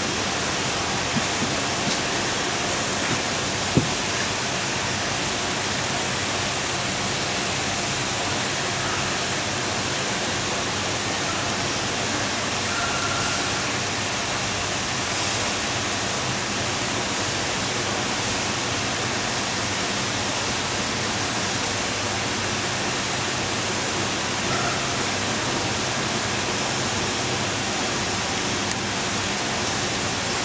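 Steady, unchanging rushing noise of running water, with a few faint clicks in the first few seconds.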